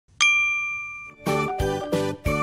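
A single bright chime struck once, ringing with clear tones and fading over about a second. Lively jingly music with a beat then starts up, a little past halfway through.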